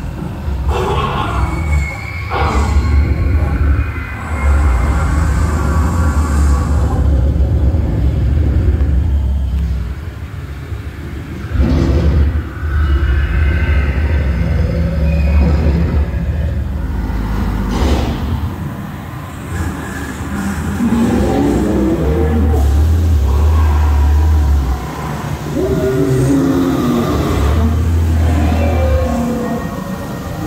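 Dark-ride soundtrack from loudspeakers: a deep, loud rumble that swells and falls back every few seconds, with a few sharp hits and music mixed in.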